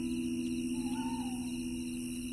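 Celtic harp notes ringing on and slowly fading between plucks. A faint short wavering chirp comes about a second in.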